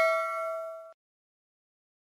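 A bell-like chime sound effect for the subscribe-button bell icon, ringing with several steady tones and fading. It cuts off suddenly just under a second in.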